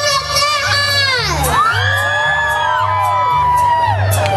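Mariachi band accompaniment with a steady, repeating bass pattern, over which a high voice swoops steeply down and back up and then holds a long note, with a crowd cheering and whooping.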